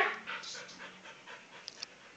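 A dog panting, with two faint clicks near the end.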